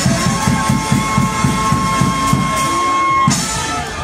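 A street brass band with drums playing: a steady drum beat under long held brass notes, breaking off suddenly about three seconds in.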